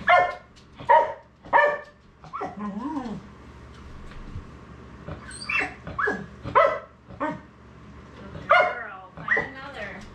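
A dog barking: about ten short barks in bunches with pauses between. The one about three seconds in is drawn out and falls in pitch.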